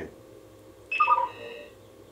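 Jibo social robot giving a short electronic chime about a second in, a few quick beep tones stepping down in pitch, acknowledging a spoken question before it answers.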